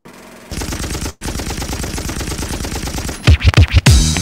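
Intro sound effects from a pre-recorded clip: a rapid, even rattle like automatic gunfire for about three seconds, then deep booming hits that drop in pitch, the loudest part, near the end.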